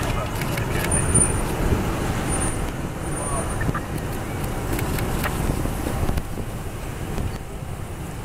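Police cars and SUVs driving slowly past in a line, their engines and tyres giving a steady traffic rumble.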